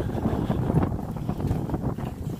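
Wind buffeting the phone's microphone: an uneven, fluttering low rumble.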